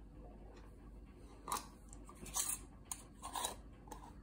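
Metal canning lid and screw band clicking and scraping against a glass jar as the band goes on, in a few short bursts in the second half.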